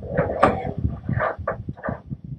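Clicks, knocks and scrapes from hands handling a small metal key organizer multitool.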